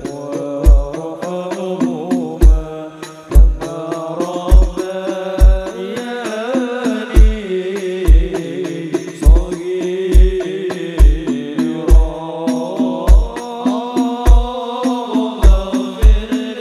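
Devotional sholawat singing with a banjari ensemble of hand-played frame drums. A deep drum stroke lands about once a second under the melody.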